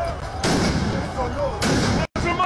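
Two loud blasts about a second apart, each with a long echoing tail, among a crowd's shouting voices: explosions in a street clash where clouds of smoke are going up.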